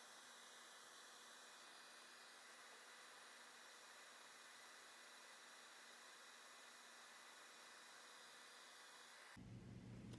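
Near silence: a faint, steady hiss.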